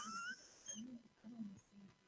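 Faint off-microphone voices from the congregation: a short high, rising voiced sound at the start, then a few faint low murmurs.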